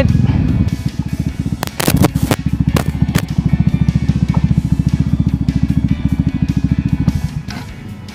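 Bajaj Dominar 400's single-cylinder engine idling with a fast, even beat, with a few sharp clicks about two seconds in. The engine stops near the end.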